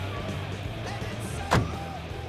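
Film score music over a steady low vehicle-engine rumble, with one sharp hit about one and a half seconds in.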